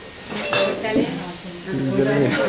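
Light clinking and scraping of paintbrushes and palette knives against glass jars and a paint palette, with a sharp click about half a second in. Voices chatter in the background.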